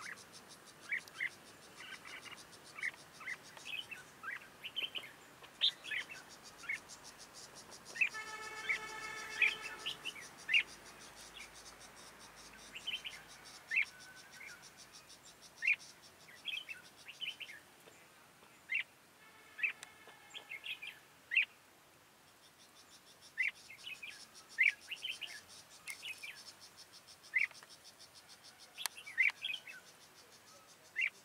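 Red-whiskered bulbuls calling back and forth in short, clear whistled notes, with two longer, buzzier calls, one about eight seconds in and one about twenty seconds in. A caged decoy bulbul is singing to lure a wild bird down to the trap. A faint, high insect buzz runs underneath.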